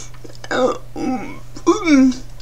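Three short wordless vocal sounds from a woman with athetoid cerebral palsy who does not speak in words. The last one is the loudest and falls in pitch near the end.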